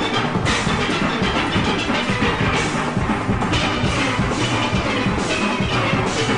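Steel orchestra playing, many steelpans ringing together at a steady loud level over a driving percussion rhythm.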